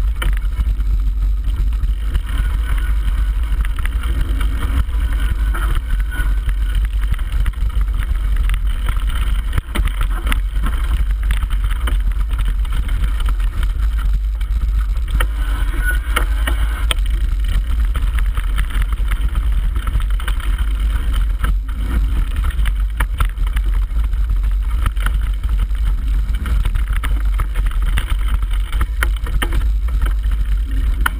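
Mountain bike descending a rough forest trail at speed, heard close up: a loud, steady rumble of wind and trail on the microphone, with frequent knocks and rattles from the bike over stones and roots.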